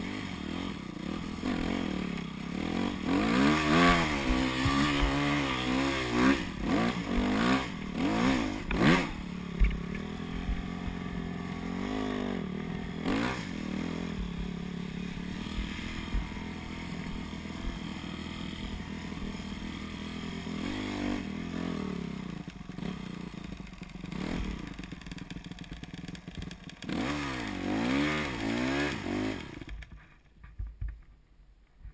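Yamaha YZ250F dirt bike's single-cylinder four-stroke engine under riding load, revving up and down again and again as the throttle is worked through the sand. The revving is strongest in the first ten seconds and again near the end, with steadier running in between.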